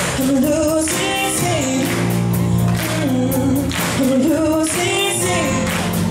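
Live rock band: a girl sings lead through a microphone over electric guitar, bass guitar, drums and keyboards.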